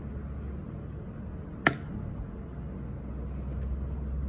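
Steady low background hum with one sharp click about one and a half seconds in.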